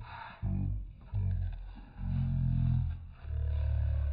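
Cardboard shipping box being pried and torn open by hand, its glued flap giving way in about five low, creaking rasps, each lasting up to a second.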